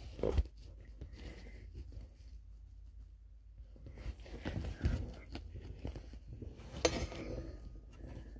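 Faint, scattered rustling and small knocks in a small room, with a short louder sound just after the start and a sharp click near the end.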